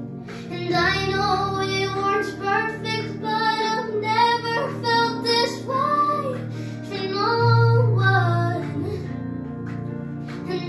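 A young girl singing a pop ballad into a microphone over an instrumental backing track, in sung phrases with held notes, the longest and loudest held note coming late on.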